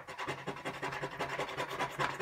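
Paper scratch-off lottery ticket having its coating scratched away in fast, repeated strokes, several a second, starting suddenly.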